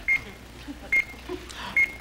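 Game show countdown clock beeping as the sixty-second round runs: three short, high electronic beeps a little under a second apart.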